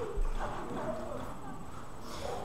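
A voice talking, with a low thump just after the start.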